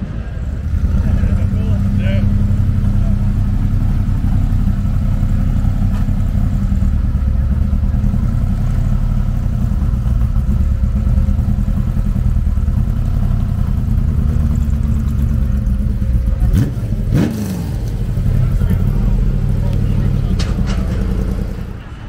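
A car engine running steadily at idle close by, a loud low rumble, with a short falling tone and a brief dip about three-quarters of the way through.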